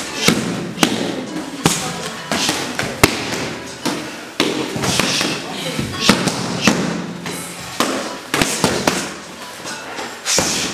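Punches and kicks smacking into Muay Thai kick pads in an irregular series of a dozen or so sharp hits, over a background of voices.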